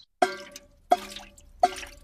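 Three drips of water from a leaking roof plinking into a bucket, evenly spaced about two-thirds of a second apart. Each is a short pitched plink that rings briefly and fades.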